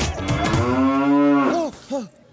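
A cow mooing: one long moo that rises and then falls in pitch, just after the music breaks off.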